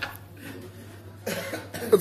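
A person coughing: a quiet moment, then a sudden harsh cough a little over a second in, with a shorter second burst near the end.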